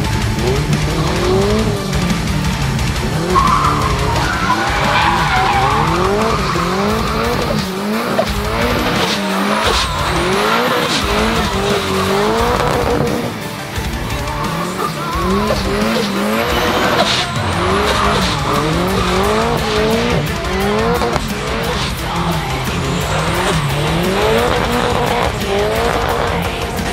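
Turbocharged 700 hp Volvo 745 doing donuts: the engine revs up and drops back over and over while the tyres squeal and skid on the asphalt. Music plays underneath.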